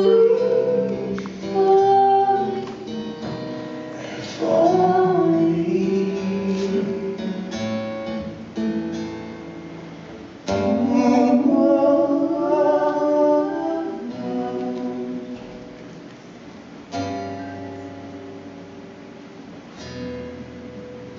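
A live acoustic duo performance: a steel-string acoustic guitar playing under singing, with the vocal lines coming in phrases separated by short gaps.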